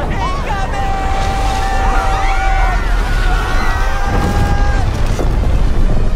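Film sound effect of a blast of snow bursting out of a portal: a loud, continuous low rumbling rush. Long wailing yells ride over it and fade out about five seconds in.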